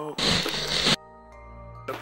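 A loud rushing noise lasting just under a second, followed by a quiet held chord of steady tones like background music.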